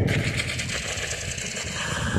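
A low, rough, rattling growl with a hiss above it.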